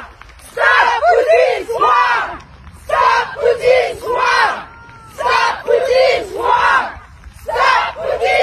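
Women's voices shouting a short protest slogan in a chant, a few syllables at a time, repeated four times at an even beat about every two and a half seconds.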